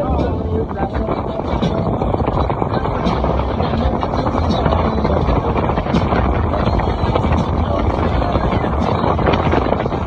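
Wake boat's engine running steadily under way, with wind buffeting the microphone.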